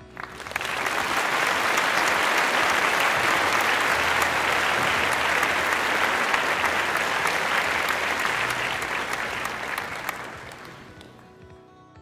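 Audience applauding. The clapping swells within the first second, holds steady, then dies away over the last couple of seconds.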